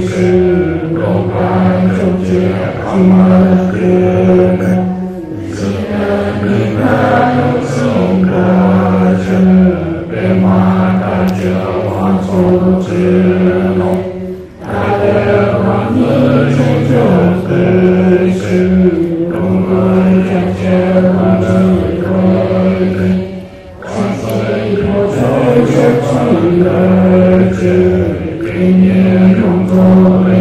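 A man's low voice chanting a Buddhist prayer in a slow, even melody on a few held notes, in long phrases broken by short pauses for breath about every nine to ten seconds.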